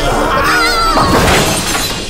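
Cartoon soundtrack: music with a wavering high note about half a second in, then a noisy crash that fills the second half.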